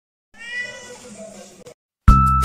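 A seal-point Siamese-type cat gives one meow, loudest near its start, then fading, before it is cut off short.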